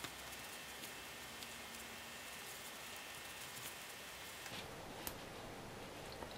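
Faint handling sounds of a crochet hook pulling mohair yarn lengths through a crocheted doll cap: soft rustling with a few small clicks spread through, over a steady low hiss.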